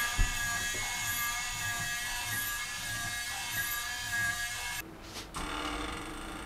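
Steady whine of a small electric motor, several unchanging tones at once, with a faint sweep that repeats about once a second; it cuts off about five seconds in.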